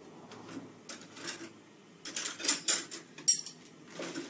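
Cutlery clinking and scraping on crockery as food is served onto a plate: scattered light clicks and scrapes, busier in the second half, with one sharp click near the end.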